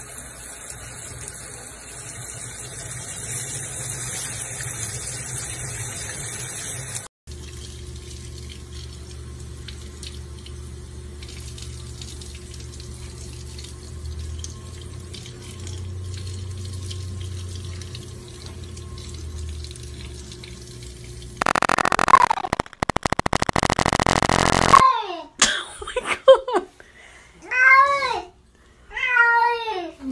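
Water spraying from a sink sprayer, then a tap running into a sink, a steady rush with a low hum under it. About 21 seconds in, a loud harsh noise lasts several seconds. It is followed by a cat meowing several times, each call bending up and down in pitch.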